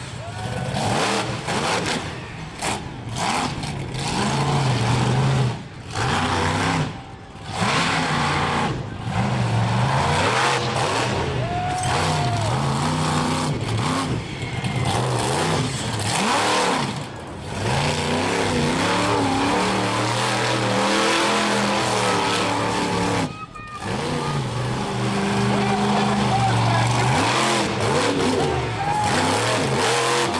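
Monster truck engine revving up and falling back over and over as it is driven hard around a dirt track, with a few brief drops where the throttle comes off.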